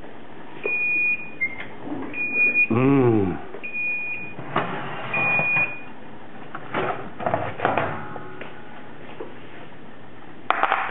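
Kitchen timer beeping four times, each beep short and high, about a second and a half apart: the signal that the roast is done. A voice gives a single drawn-out exclamation in the middle, and dishes clatter a little near the end.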